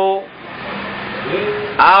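A man lecturing pauses for about a second and a half, the gap filled by a steady hiss and a short faint hum, then resumes speaking near the end.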